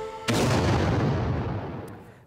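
A theme tune cut off about a quarter second in by a sudden loud boom-like hit, heaviest in the bass, that dies away over about a second and a half.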